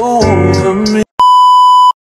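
Background music that cuts off about halfway through, followed by a brief gap and then a loud, steady test-tone beep lasting under a second: the tone that goes with TV colour bars.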